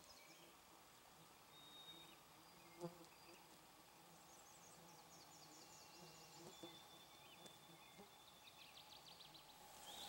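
Near silence with faint distant forest songbirds: a few thin, high whistled notes and a couple of rapid high trills. A single soft knock about three seconds in.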